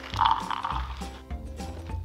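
Riced cauliflower pouring from a plastic bag into a measuring cup: a short rattle of small pieces hitting the cup, strongest early on, over steady background music.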